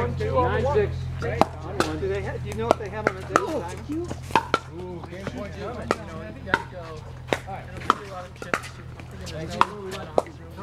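Pickleball rally: paddles hitting the hollow plastic ball, about a dozen sharp pops at an uneven pace, roughly half a second to a second apart.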